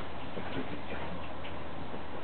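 A French bulldog playing at bare feet, giving faint snuffles and small short mouth sounds over a steady background hiss.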